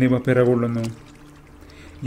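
A man speaking Malayalam in a steady narrating voice, stopping about halfway through for a pause filled by a faint low hum.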